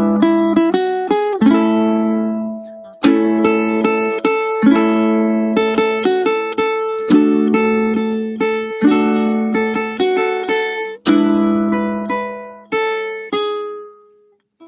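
Ukulele played fingerstyle as a solo chord-melody arrangement: plucked melody notes and chords ringing over one another, in short phrases, with the sound dying away in brief pauses about a third, two thirds and three quarters of the way through.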